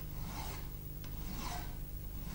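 Metal file worked by hand across a metal workpiece clamped in a bench vice, the file's teeth scraping steadily on the metal.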